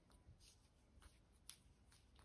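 Near silence with faint soft ticks and rustling from wooden knitting needles and wool yarn as stitches are knitted; one slightly sharper tick about one and a half seconds in.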